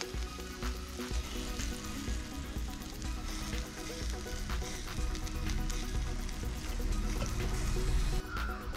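Marinated chicken sizzling over hot charcoal in a wire grill basket, with drips and basting crackling on the coals. Background music plays underneath.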